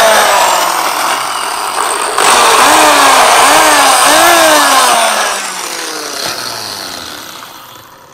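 Handheld electric drill running and boring into tyre rubber. Its motor pitch dips and rises as the load changes. It starts suddenly, gets louder about two seconds in, and fades away slowly over the last few seconds.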